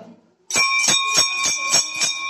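Small brass temple bell struck repeatedly, about three strikes a second, beginning about half a second in, its clear ringing carrying on between strikes.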